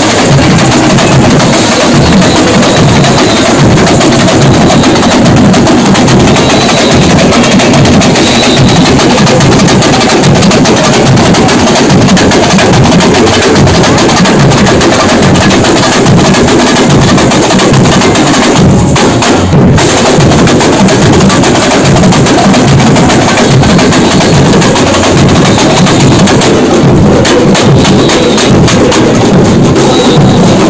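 A samba school bateria (drum section) playing a samba rhythm at full volume, recorded from right among the drummers: dense, continuous percussion with deep surdo bass drums under snare and small-drum strokes.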